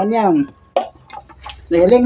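A person's voice making two drawn-out, wordless sounds, the first rising then falling in pitch, with a few light clicks in the quieter stretch between them.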